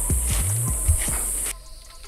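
Background music with a drum beat that cuts off suddenly about one and a half seconds in, leaving quieter outdoor sound.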